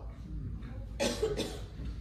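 A single cough about a second in, short and sharp, fading over about half a second.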